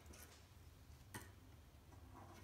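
Near silence with one short, faint click a little over a second in: small metal parts of a reed gouging machine's blade holder being handled.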